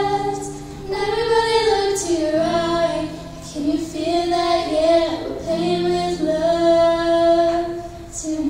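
Two female voices singing long held notes in harmony, with soft acoustic guitar and ukulele underneath.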